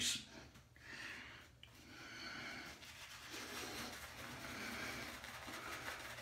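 Shaving brush scrubbing lather onto a bearded cheek: a soft, steady swishing that starts about a second in.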